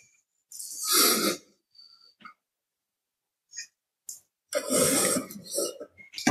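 Breathy, unpitched noises from a person close to the microphone, once about a second in and again near the end, with a few faint clicks between.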